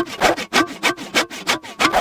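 Hand saw sawing with quick, even back-and-forth strokes, about six a second: a sawing sound effect.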